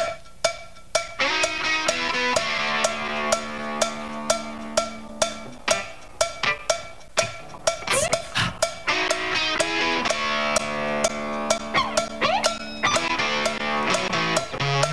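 Indie rock band starting a song live, with no singing yet: drum kit with regular snare hits about twice a second under sustained chords. The band comes in about a second in.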